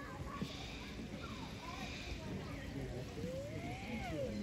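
Distant voices of people talking in the background, with a soft hiss that comes and goes.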